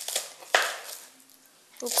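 A kitchen knife cutting through crunchy spring onions onto a chopping board: a short cut near the start and a louder one about half a second in, then a pause.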